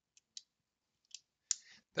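Several faint, sharp clicks of computer keys at irregular spacing, with a breath and the first word of speech near the end.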